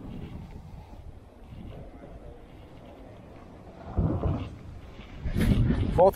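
Wind buffeting the microphone: a steady low rumble with two louder bursts, about four seconds in and near the end.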